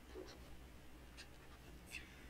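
Near silence with a few faint ticks of a stylus writing on a tablet screen as the text is marked up.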